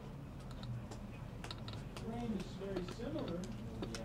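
Faint, irregular light clicks, with a faint voice in the background around the middle.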